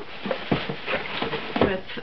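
Handling of boxed mugs and a plastic bag on a tabletop: a few dull knocks as the cardboard boxes are set down and shifted, with crinkly rustling of plastic in between.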